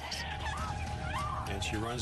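A woman's high, wavering cries of distress, two short yells about half a second apart, over a steady background tone.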